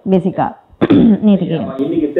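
Speech: people talking, with a short vocal sound, perhaps a throat clear, near the start.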